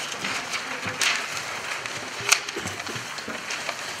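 Sheets of paper rustling and crinkling as they are handled, with a sharp crinkle about a second in and another just past two seconds.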